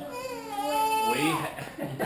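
A young child's drawn-out whining cry: one long held wail that falls in pitch at its end, followed by shorter broken sounds.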